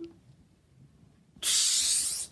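A loud hissing 'pshh' that a child makes with his mouth as a sound effect during toy play. It starts about a second and a half in and lasts under a second, after a small click of a toy being handled at the start.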